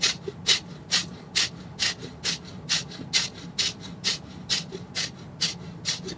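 A man's rapid, forceful exhales through the nose, short sharp huffs at about two a second in a steady rhythm: the pranayama 'shoulder breath', one exhale each time the hands come down to the shoulders.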